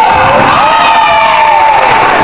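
Spectators cheering and shouting in a gym, with long drawn-out calls.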